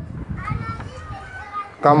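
Faint children's voices in the background, higher-pitched than the man's, heard in the gap in his speech.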